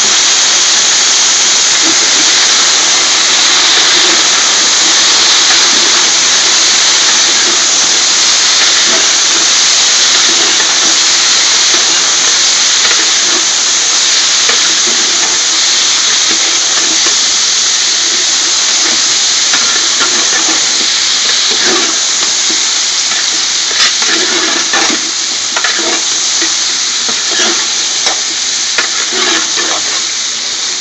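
Whole scotch bonnet peppers frying in hot oil in a large metal pot, a loud steady sizzling hiss. In the second half a ladle stirs them, adding scattered clicks and knocks.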